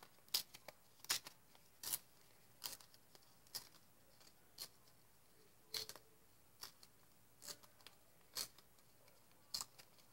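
Paper being torn by hand in short rips: about a dozen faint, crisp tearing sounds spaced roughly a second apart.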